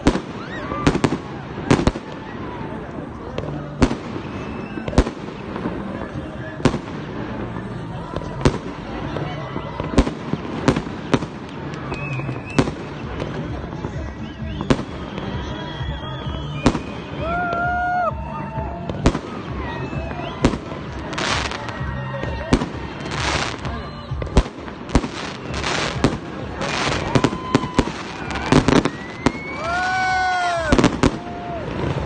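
Fireworks display: aerial shells bursting overhead in a long run of sharp bangs, irregularly spaced, often a second or less apart and thickening near the end. A few rising and falling whistling tones come near the end.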